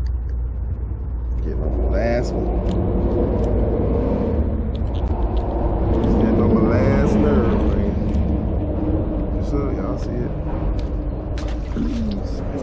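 Steady low rumble of vehicle traffic, swelling a little around the middle, with indistinct voices and small clicks from handling.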